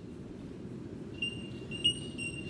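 Quiet opening of an experimental jazz track: a low, rumbling synthesiser hum with a thin, high steady tone over it, and short high electronic beeps starting about a second in.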